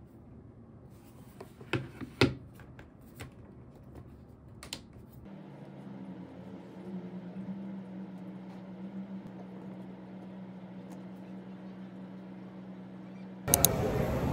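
A few sharp clicks and knocks as a laptop is handled and set down on a desk, the loudest about two seconds in. Then a steady low electrical hum sets in, with a few faint key clicks over it. Near the end a much louder wash of noise starts suddenly.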